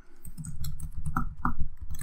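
Typing on a computer keyboard: a quick, steady run of keystrokes.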